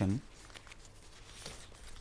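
Faint rustling of paper sheets being handled, with a few small soft clicks.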